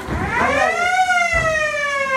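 Siren-style signal tone that climbs steeply for about a second and then slowly falls: the end-of-round signal in a Muay Thai bout.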